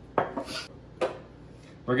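Two sharp knocks about a second apart, the first with a brief ring: bottles being set down on and lifted off a granite countertop.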